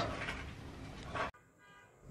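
Faint room noise that fades, with a brief faint sound just past a second in, then an abrupt cut to near silence.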